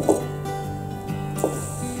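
Background music, with two knocks of a kitchen knife cutting through an onion onto a wooden cutting board, one at the very start and one about a second and a half in.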